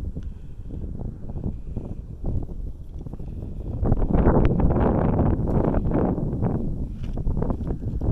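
Wind buffeting the microphone in uneven gusts, growing louder about halfway through.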